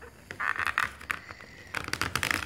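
Crackling, scraping handling sounds from a musical greeting card being pulled apart as its glued-down parts are peeled off. There is a brief scratchy burst about half a second in and a few faint clicks near the end.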